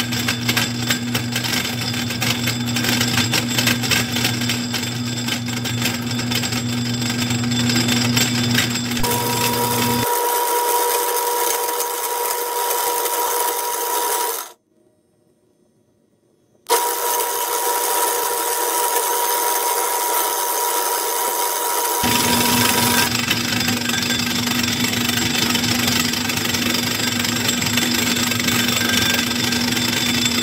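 Metal lathe running while a knurling tool presses a knurl into a spinning steel pin, a steady machine sound with a low hum. Partway through the sound changes character: the low hum drops out and a steady higher tone comes in, broken by about two seconds of near silence, before the original running sound returns.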